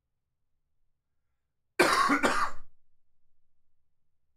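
A man congested with a cold clearing his throat with a cough, one sudden burst of about a second in two quick parts, near the middle.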